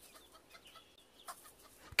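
Faint clucking of hens.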